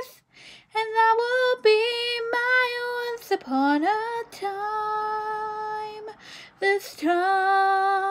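A woman singing solo with no accompaniment heard, in short phrases broken by breaths. About four seconds in her voice slides up into a long held note, and she holds another long note near the end.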